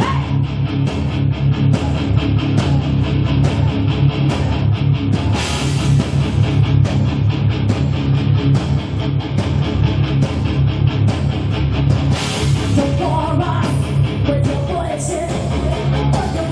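Live heavy metal band playing loud: distorted electric guitars through Marshall amplifiers, bass guitar and drums, recorded in front of the stage.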